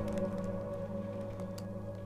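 Sustained ambient music drone of steady low held tones, slowly fading, with a few faint clicks of laptop keys being typed.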